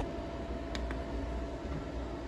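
Steady low background hum, with a sharp click right at the start and two faint ticks just under a second in.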